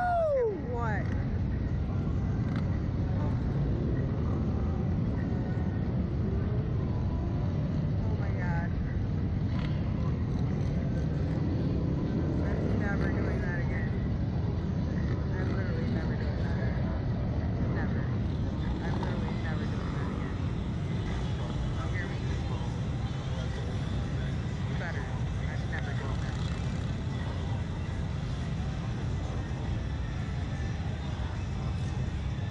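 Steady wind rumble on a slingshot ride's onboard camera microphone as the capsule swings in the air, with a short falling yell right at the start and a few muffled voices underneath.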